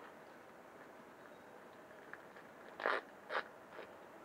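A clear plastic packaging wrapper being pulled open by hand: two short crinkling rustles about three seconds in, with a few faint clicks around them.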